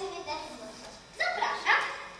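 A child's voice on stage: vocal sounds trail off at the start, then come two short, sharp calls rising in pitch a little over a second in.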